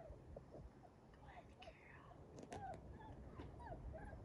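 Mini Aussiedoodle puppy making faint, short squeaky whimpers, a few a second, as it wriggles on its back.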